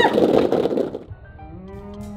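A shower of small bouncy balls pouring down and clattering onto a person and the floor of a box for about a second, just after a short scream. Background music with held notes follows.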